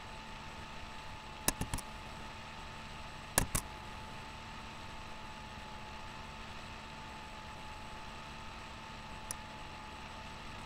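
Sharp clicks in quick pairs, about a second and a half in and again about three and a half seconds in, with a faint single click near the end, over a steady hum with a thin whine.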